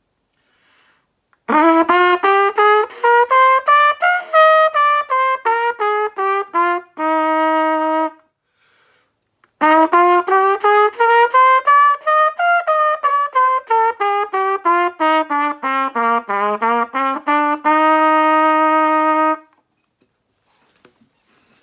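Trumpet playing two major-scale runs of quick, separate notes. Each run climbs, comes back down and ends on a long held note, with a breath between them. The second run goes higher and dips below the starting note before settling, an extended scale.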